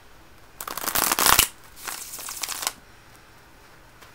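A deck of tarot cards being shuffled in two quick bouts, the first louder than the second.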